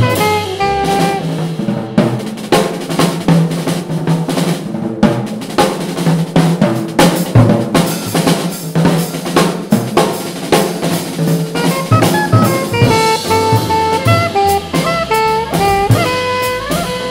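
Live jazz quartet: the alto saxophone line ends about two seconds in, and the drum kit carries the music for about ten seconds with busy snare hits, bass drum kicks and cymbals. The saxophone comes back in near the end.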